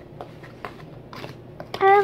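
Light, irregular clicks and taps of small objects being handled and stirred at a table, a few tenths of a second apart. Near the end a girl's voice comes in and is the loudest sound.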